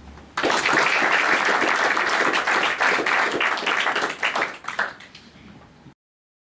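Audience applauding, breaking out suddenly just after the start. It thins to a few scattered claps about five seconds in, and the sound then cuts off.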